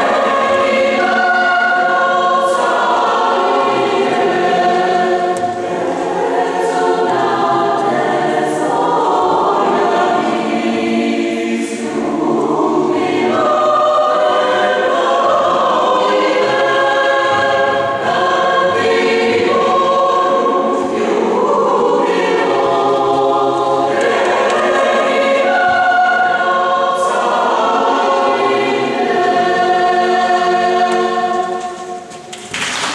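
Mixed chamber choir of men's and women's voices singing in a church, sustained chords in several parts, with the hiss of sung 's' consonants now and then.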